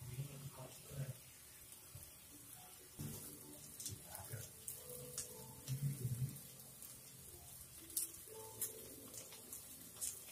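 Squid thoran frying in a clay pot: a steady faint sizzle with scattered crackles and pops.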